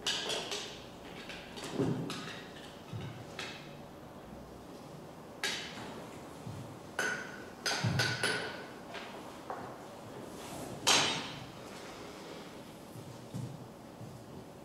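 Irregular knocks, thuds and clicks of objects being handled and set down on a hard floor, with a few short ringing clinks about seven to eight seconds in. The loudest knock comes near eleven seconds.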